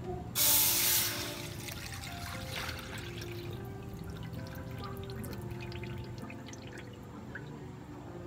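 Coconut milk poured from a pot into a metal wok. A loud gush about half a second in thins to a trickle over the next few seconds, then scattered drips.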